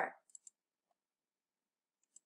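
Two faint, sharp computer mouse clicks in quick succession, about a third of a second in.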